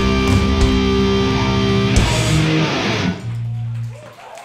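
Hardcore band playing live with heavily distorted electric guitars and drums, closing the song on a final crash about halfway through. The chord rings out and fades, leaving a low steady hum from the amps that cuts off at the very end.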